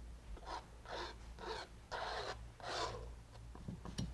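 Short-bristled synthetic paintbrush scrubbing thick acrylic paint onto canvas: about five short strokes roughly half a second apart, fading out near the end.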